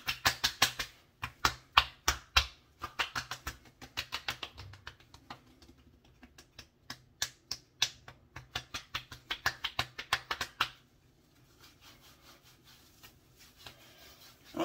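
Palms slapping aftershave splash onto the face and neck: quick runs of sharp skin-on-skin slaps, several a second, with short pauses between runs, dying away about three-quarters of the way through.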